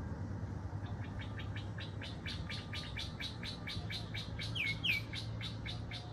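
A bird calling in a rapid series of short, high chirps, about five a second, starting about a second in and running on past the end, with two short whistled notes slipped in near five seconds. A steady low hum sits underneath.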